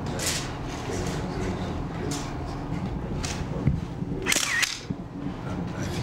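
Press photographers' camera shutters clicking about four times, the last a longer burst like a motor drive about four and a half seconds in, over a low murmur of the room.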